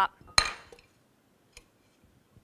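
A sharp metallic clack with a brief ring as a metal lab stand is handled on the optics bench's metal track, about half a second in, followed by a faint tick a second later.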